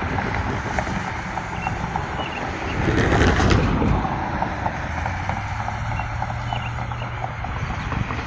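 Wind buffeting the microphone in gusts, the strongest about three seconds in, over a steady low rumble.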